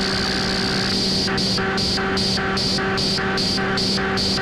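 Electronic music played on analog hardware synthesizers: a steady low drone with a pulsing high hiss, like gated hi-hats. The hiss runs as one continuous wash for about the first second, then returns as about three pulses a second.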